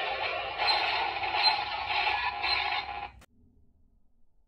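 Electronic transformation-belt toy sound effect with music, from a Kamen Rider Dreadriver, playing after the X-Rex card is read, with a few sharp accents. It cuts off suddenly about three seconds in.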